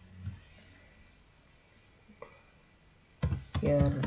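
Computer keyboard typing: after a quiet pause, a quick run of key clicks starts near the end.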